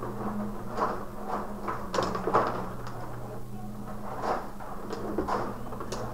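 Table hockey game in play: the control rods sliding and rattling in their slots, with irregular sharp clacks of the players and puck.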